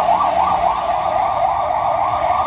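Ambulance siren in fast yelp mode: a loud, rapid rising-and-falling wail, about four to five sweeps a second, as the ambulance drives past.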